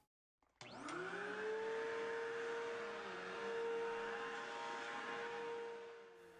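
Vacuum cleaner switched on about half a second in, its motor whine rising as it spins up, then running steadily.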